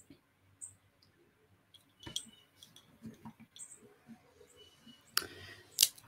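Faint, scattered clicks and light taps of small craft pieces (golf tees and a golf ball) being handled, with a short, louder rustle about five seconds in.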